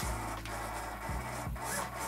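Servos in a large RC model airliner's wing buzzing in short spells as its spoilers are driven from the transmitter, over a steady low hum.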